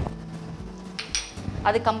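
Kitchen utensils knocking against cookware, with one sharp metallic clink about a second in.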